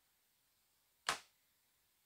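A single sharp click about a second in, as an overhead RV cabinet door is shut. Otherwise near silence.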